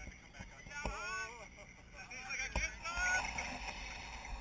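Radio-controlled rock crawler driving down over rocks: the whine of its small electric motor rises and falls, with a couple of brief knocks and faint indistinct voices.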